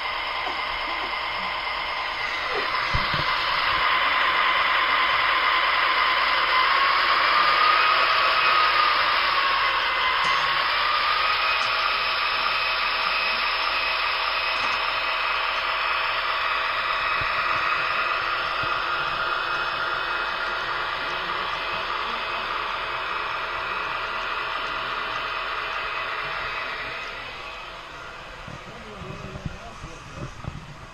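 HO scale model freight train running past close by: a steady rushing noise that swells about three seconds in. A brief whine rises and falls around ten seconds in, and the noise fades near the end.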